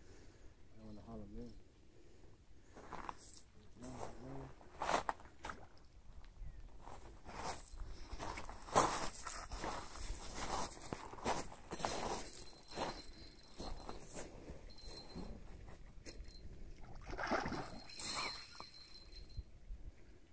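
Low-level outdoor sound with a few brief, muffled voices and scattered clicks and knocks. A faint, steady high whine runs through the middle.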